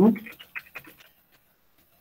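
A man's voice finishing a word, then a pause with a few faint short clicks and near silence.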